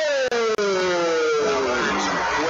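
A ring announcer's amplified voice holding one long, slowly falling drawn-out call of the winner's name, over crowd noise in the hall. Two very brief dropouts break it within the first second.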